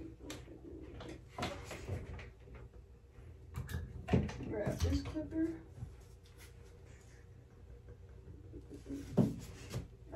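Light clicks and knocks of hair clippers and small tools being picked up and handled at a barber station, with a short stretch of low, wordless voice about four to five seconds in.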